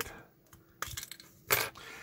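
Plastic housing of a digital kitchen thermometer being pried open with a small metal tool: a light click about a second in, then a sharper snap about a second and a half in as the case halves come apart.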